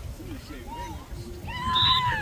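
A spectator shouting in a high-pitched voice: a few short calls, then one long, loud call that rises and falls near the end.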